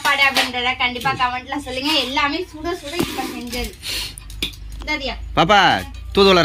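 Voices talking, with a few light clinks of stainless steel plates and serving spoons in the middle while food is served.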